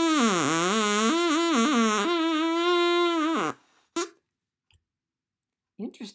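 Plastic drinking-straw reed, its end cut to a point and flattened so it vibrates as a double reed the way an oboe or bassoon reed does, blown to give a loud buzzy tone. The pitch sags and wobbles for the first two seconds, then holds steady before cutting off about three and a half seconds in, with one short toot just after.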